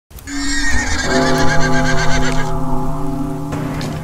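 A horse whinnying: one long, wavering neigh that ends about halfway through, over sustained music chords that come in about a second in, with a low rumble beneath.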